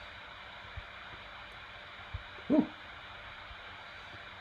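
Steady faint hiss of a home recording with no speech, broken about two and a half seconds in by a man's short hum that rises in pitch. A few faint low thumps also sound during it.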